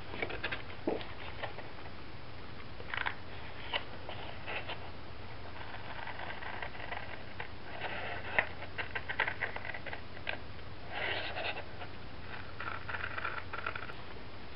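Scissors cutting a sheet of patterned scrapbook paper along a zigzag line: faint, short, irregular snips, bunched in runs in the second half.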